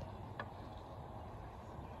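Quiet open-air background with a light knock right at the start and a fainter tap about half a second in.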